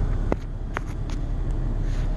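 Steady low rumble of a car's engine and tyres heard from inside the cabin, with a few short clicks in the first half.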